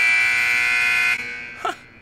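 A countdown timer's buzzer sounding a loud, steady, buzzy tone to signal that the five minutes are up. It cuts off about a second in and fades away.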